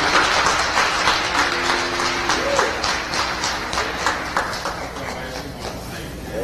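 Congregation applauding, a dense round of clapping that thins out and fades toward the end, with a few voices underneath.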